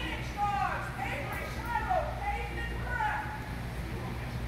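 A high-pitched voice making about four short calls that slide down in pitch, roughly one a second, over a steady low hum.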